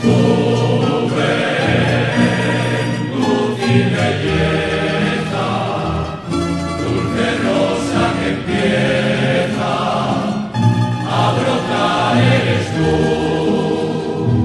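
A song sung by a choir with instrumental accompaniment.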